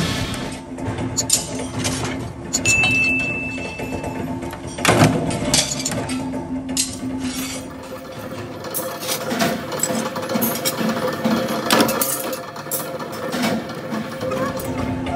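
Irregular metallic clinks and knocks of steel pieces being handled and set into a workshop press die, with music underneath.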